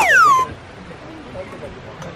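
Edited-in comic sound effect: a high whistle that slides steeply down in pitch and cuts off about half a second in, followed by faint background ambience.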